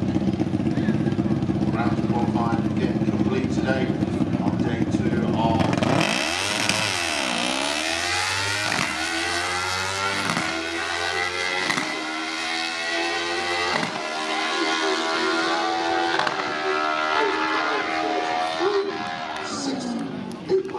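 Junior dragster's single-cylinder engine running steadily at the start line, then about six seconds in it launches: the pitch climbs sharply and holds high as the car runs away down the strip, slowly fading with distance.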